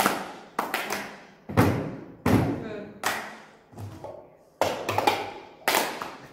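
A group playing the cup song: hand claps and cups knocked and thumped on a tabletop in a repeating rhythm, with sharp strokes about one to two a second.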